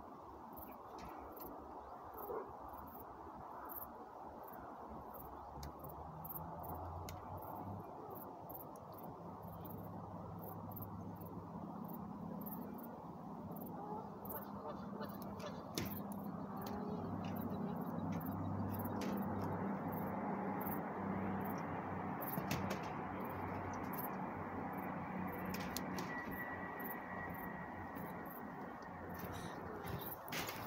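Outdoor field ambience: insects chirping in short, rapidly repeated high notes over a steady low hum that comes in a few seconds in and grows louder through the middle.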